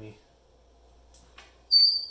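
A few faint clicks, then near the end a short, loud, high-pitched squeal from the metal vise as it is worked.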